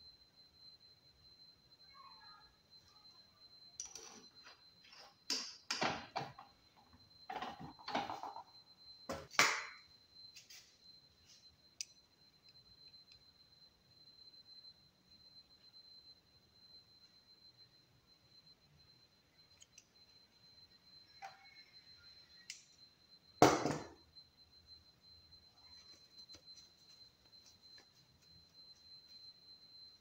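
Handling noises from small workshop tools being picked up and set down: scattered clicks, knocks and rustles in a cluster between about 4 and 10 seconds in, and one sharp knock, the loudest sound, a little before 24 seconds. A faint steady high-pitched whine runs underneath.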